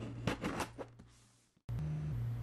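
Scissors snipping at the tape on a cardboard box, a few quick cuts in the first second. The sound then fades out to silence, and a steady low electrical hum returns near the end.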